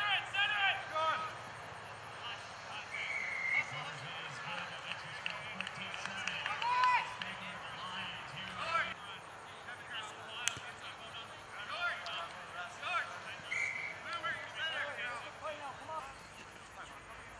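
Distant shouts and calls from rugby players and sideline spectators carrying across an open field, irregular and scattered. Two short, steady high tones sound about three seconds in and again near the end.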